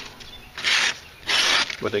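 A sharpened small kitchen knife slicing through a sheet of paper twice, each cut a short rasping hiss, showing how sharp the edge is.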